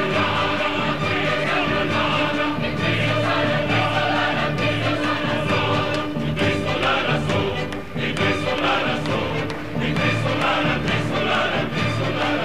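A choir singing full-voiced with accompaniment in a concert finale, a dense, steady block of sustained sound.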